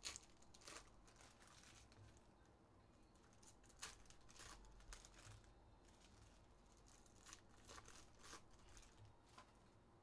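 Faint crinkling and rustling of a foil trading-card pack being torn open and the cards handled, with scattered soft ticks as cards are set down; the sharpest sounds come right at the start and about four seconds in.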